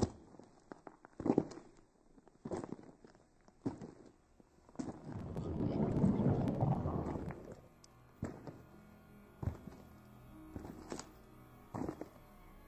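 Slow, heavy footsteps thud about once a second. In the middle a louder rumbling noise swells and fades away. Low music comes in for the second half while the steps go on.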